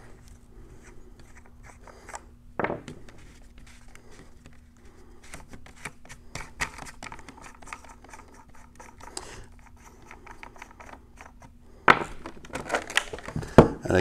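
Small scrapes, clicks and rubbing of a plastic Jobe float valve and bulkhead fitting being handled against a white plastic tank-wall sample. There is a sharper knock about three seconds in and louder knocks near the end as the plastic piece is moved. A faint steady hum runs underneath.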